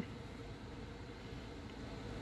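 Faint steady low background noise with no distinct event: a pause in the talk.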